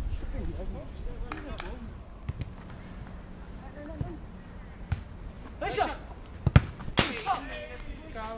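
A football being struck: a few sharp thuds of the ball, the loudest about six and a half seconds in, amid players shouting across the pitch.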